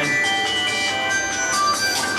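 Mobile phone ringing with a melodic ringtone: a simple tune of clear, high, held notes.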